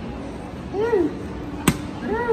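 A short vocal exclamation that rises and falls in pitch about a second in, then a single sharp knock near the end.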